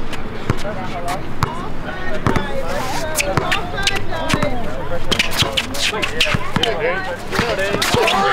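A basketball being dribbled on an outdoor hard court, a run of sharp bounces, with the voices of players and onlookers around it.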